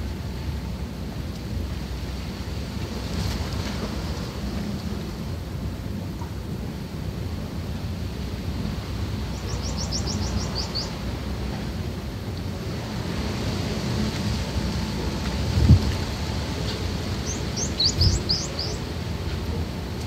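Steady low rumbling background noise. A small bird gives a quick trill of high, falling chirps about halfway through and again near the end. Two dull thumps come near the end, the first the loudest sound.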